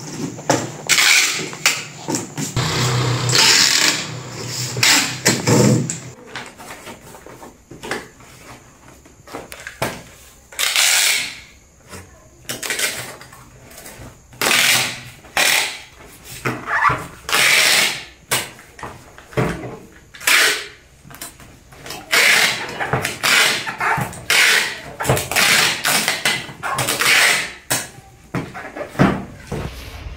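Packing tape pulled off a handheld tape dispenser again and again to seal cardboard boxes: a long run of short loud screeches, each under a second.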